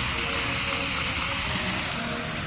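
Water pouring and splashing steadily over rocks in a small cascade, a constant rush.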